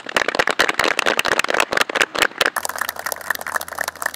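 A group of people applauding, a dense, steady run of hand claps. About two and a half seconds in, a low steady hum joins under the clapping.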